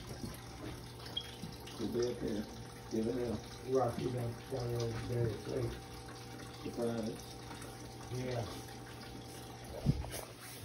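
Indistinct voices talking in short phrases over a steady low hum.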